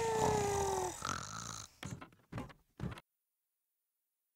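Cartoon snoring: a low rasping snore under a long, slowly falling whistle, followed by three short soft sounds before the sound cuts to silence about three seconds in.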